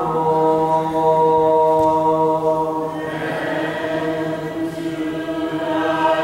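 Unaccompanied liturgical chant: voices sing long held notes, with a low steady note under them for the first half, and the melody changes about halfway through.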